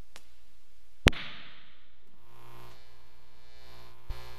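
A small click, then a sharp loud click about a second in, followed about two seconds in by a steady electrical buzz of mains hum from the audio system.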